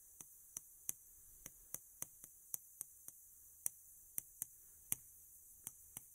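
Chalk striking and clicking on a chalkboard as characters are written stroke by stroke: a string of faint, sharp ticks at irregular intervals, two to four a second.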